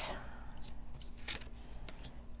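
Laminated, thin plasticky oracle cards being slid and laid one on top of another on a wooden table: a short swish at the start, then a few faint brushing sounds.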